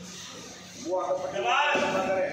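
A man's voice speaking, coming in about a second in after a quieter stretch of faint room noise.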